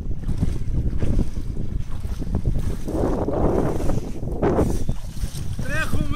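Wind buffeting the microphone in a steady low rumble, with louder gusts about three seconds in and again a little later. A short high call sounds right at the end.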